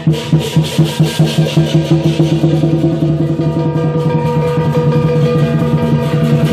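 Lion dance percussion: a large Chinese lion drum with cymbals and gong. Fast regular beats about five a second turn into a denser, steadier roll about two seconds in, with the cymbals and gong ringing over it.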